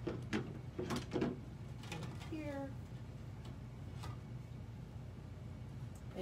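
Cotton fabric being folded and handled on a cutting mat, with a few light knocks and taps. A short falling vocal hum comes about two seconds in.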